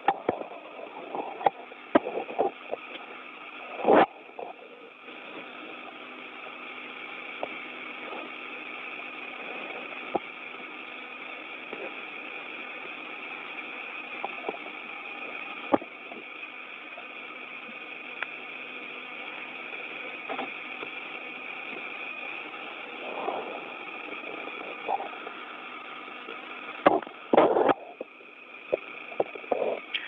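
Open air-to-ground radio channel: a steady, band-limited static hiss with a faint hum under it. It is broken by a few sharp clicks and short crackling bursts, the loudest about four seconds in and again near the end.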